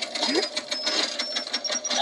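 Cartoon time bomb's countdown timer: rapid, even ticking under a thin high beep that climbs in pitch step by step as the timer runs down.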